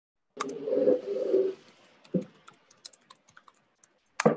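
Computer keyboard being typed on, picked up by a participant's open microphone on a video call: a short rustling noise about half a second in, then scattered, irregular key clicks, several a second.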